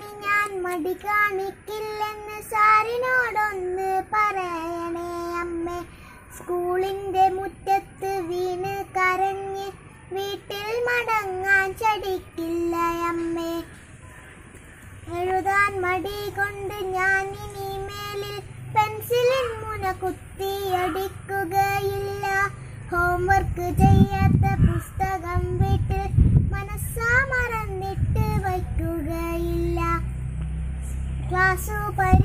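A young girl singing solo without accompaniment: held, wavering notes in short phrases with brief breaths and a pause about halfway through. In the second half a low rumbling noise comes in under the voice, loudest a few seconds before the end.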